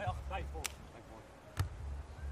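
Hands striking a beach volleyball during a rally: two sharp slaps about a second apart.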